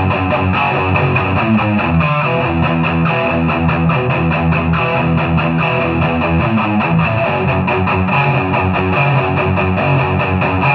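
Gibson Les Paul Traditional electric guitar playing an overdriven rock riff through Marshall DSL40C amplifiers with a Boss SD-1 overdrive pedal, the chords changing steadily throughout.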